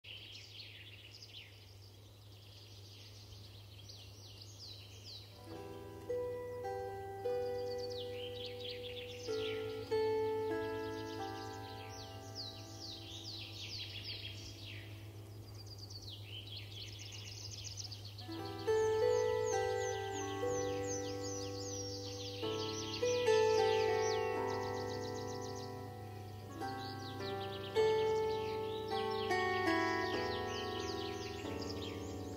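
Songbirds singing with repeated falling chirps, then about five seconds in a bandura starts playing: a slow melody of plucked strings and chords, each note ringing out and fading, while the birdsong carries on above it.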